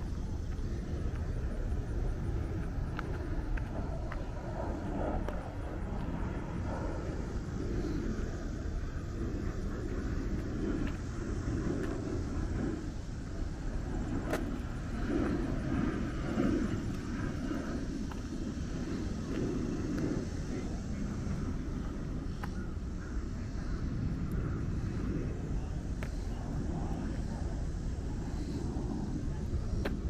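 Outdoor background: a steady low rumble with indistinct voices of people around.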